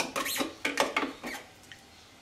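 A spoon scraping and knocking against a clear plastic food processor bowl while blended yoghurt is scooped out, a quick run of clicks and scrapes that stops about a second and a half in.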